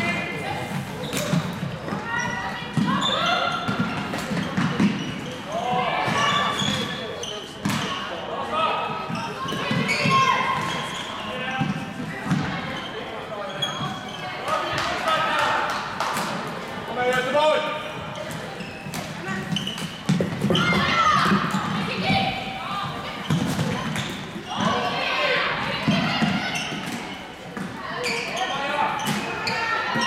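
Floorball play in a large sports hall: voices on and around the court throughout, with short clacks of sticks on the plastic ball and footsteps on the court floor, all echoing in the hall.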